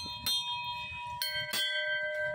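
Large brass Hindu temple bells rung by hand, the clapper striking a few times, the loudest strike about one and a half seconds in, each leaving steady ringing tones that overlap and hang on.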